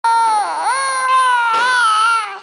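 Infant crying: one long, loud cry that dips in pitch about half a second in, then holds steady.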